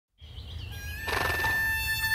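A faint bird chirping briefly, then a harmonica comes in about a second in with a breathy swell, holding a chord as the soundtrack music begins over a low steady hum.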